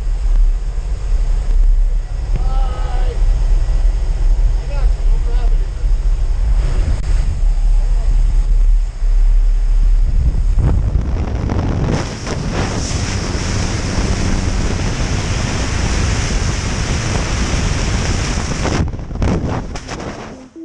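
Jump-plane cabin noise: a steady aircraft engine drone with wind buffeting the camera's microphone and a few voices in the first few seconds. About eleven seconds in, the wind rush turns louder and hissier as the tandem pair reach the open door, and it breaks off abruptly near the end.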